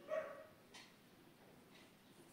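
A dog gives one short, high bark just at the start, then it is quiet apart from a couple of faint soft rustles.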